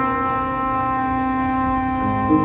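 Trumpet holding one long, steady note during a live jazz performance, with the band's low backing faintly beneath it.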